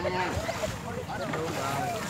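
Several voices calling at a distance over wind on the microphone and moving river water.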